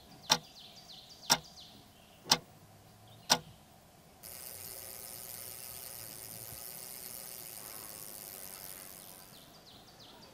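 A wall clock ticking, one loud tick a second, four ticks. About four seconds in it cuts to a steady high hiss of outdoor background noise that fades away near the end.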